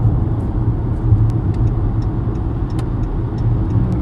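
Steady low rumble with a few faint scattered clicks.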